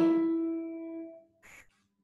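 A single piano note, the phrase's closing E, ringing and dying away over about a second, then a faint click.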